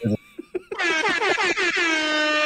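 High-pitched laughter, starting with quick cackling pulses and drawing out into a long, held squeal.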